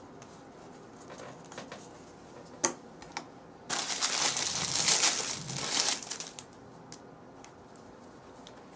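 Packaging wrapper on a roll of splinting material crinkling loudly for about three seconds as it is handled and opened, starting a little before midway. Before it there is soft rustling of the padding on the table and one sharp click.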